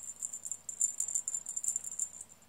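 A small bell jingling in quick, uneven shakes as a feather cat-teaser toy is waved.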